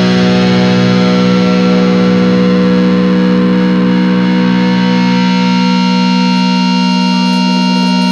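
Hardcore punk music: a distorted electric guitar chord held and ringing on steadily, with no drum hits.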